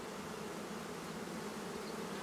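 A mass of Russian honeybees buzzing steadily as they cluster and fan in their new hive, a sign the beekeeper reads as the colony having found a home.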